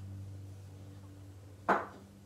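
A drinking glass set down on a desk, one short knock near the end, over a steady low hum.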